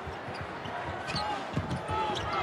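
Basketball dribbled on a hardwood court, a few low bounces, under the steady noise of an arena crowd.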